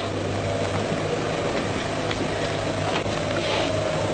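Steady low hum and hiss of an old film soundtrack, with a faint held tone above the hum and a couple of faint clicks in the second half.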